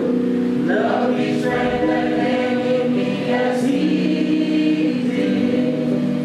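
A group of people singing a slow hymn together, holding each note long.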